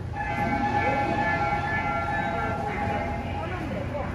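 A Seoul Subway Line 5 train pulling into the station, sounding a steady multi-tone horn for about two and a half seconds, starting half a second in, over the low rumble of the approaching train.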